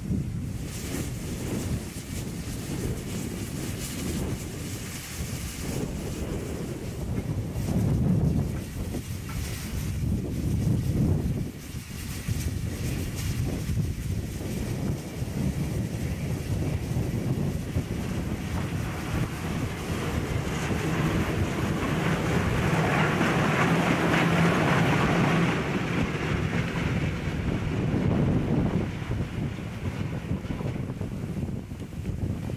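Wind buffeting the microphone over a Deutsche Reichsbahn class 52 steam locomotive moving slowly in a depot with steam hissing from it. The hiss grows louder in the second half as the locomotive comes close.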